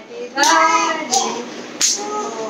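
A young child's high voice with three hand claps about two-thirds of a second apart.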